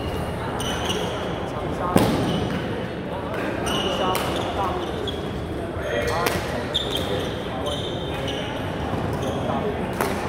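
Badminton rally in a large hall: sharp cracks of rackets striking the shuttlecock, the loudest about two seconds in, and short squeaks of shoes on the court floor, over the chatter of other players.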